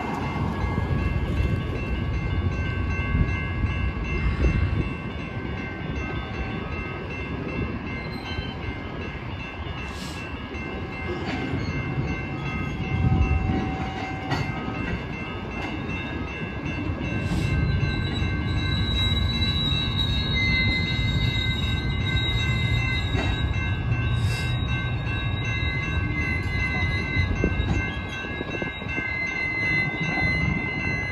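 A train of tank cars rolling slowly through a road grade crossing, its wheels making a steady rumble with occasional clicks over the rail joints. Steady high ringing tones run throughout from a crossing bell, and a high wheel squeal joins in about two-thirds of the way through.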